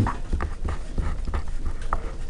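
Pen writing on paper: a run of short, faint strokes as a fraction and an x-cubed term are written.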